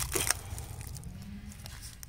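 A few brief crisp crackles near the start, from dry fallen leaves and a thornless blackberry cane being handled at ground level.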